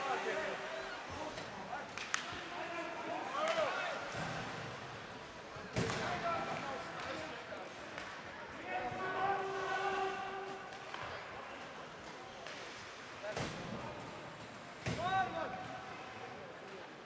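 Ice hockey play in a rink: players shouting and calling out, with four sharp knocks of stick and puck hits on the ice and boards.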